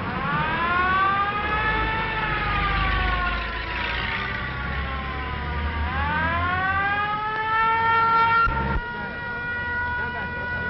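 Police car siren wailing: its pitch winds up over about two seconds, slides slowly down, then winds up again, with a low engine rumble underneath. About nine seconds in the sound cuts to a siren held at one steady pitch.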